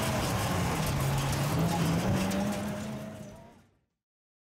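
Rock-crawler buggy's engine running under load as it climbs a steep rock ledge. Its pitch rises a little midway, then the sound fades out near the end.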